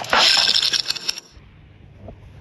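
A short, bright jingling, clinking sound for about a second that cuts off suddenly, leaving a faint low hum.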